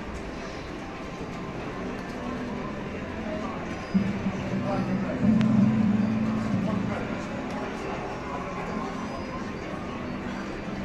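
Casino floor background of voices and machine sounds. About four seconds in, a Coyote Moon slot machine's reels stop and it plays a short win tune of held low tones for a small 25-credit line win, lasting about three seconds.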